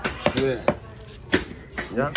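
Large knife chopping raw tuna on a wooden chopping block: sharp, evenly spaced strikes about two-thirds of a second apart.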